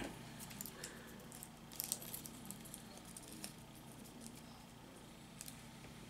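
Faint crinkling of aluminum foil being squeezed and pressed by hand around a small wire armature, in scattered light ticks and rustles with a brief cluster about two seconds in.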